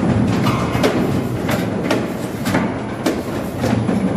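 Firewood packing machinery running: a steady low drone with repeated sharp clacking knocks, roughly two a second.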